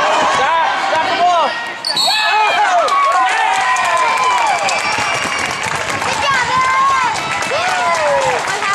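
A basketball bouncing and thudding on a gym's hardwood floor, with spectators' high-pitched voices calling out over it throughout.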